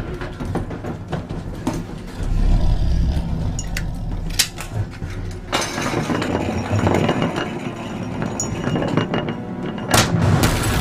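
Film soundtrack: tense music over a deep low rumble, with a few sharp clicks about halfway. From a little past halfway, a denser clattering texture runs on, fitting a metal canister rolling across wooden floorboards.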